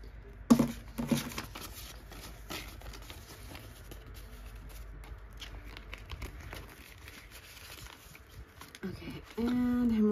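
Paper banknotes and a clear plastic binder pouch being handled: two sharp snaps about half a second and a second in, then soft rustling and crinkling of bills and plastic. Near the end a voice comes in briefly.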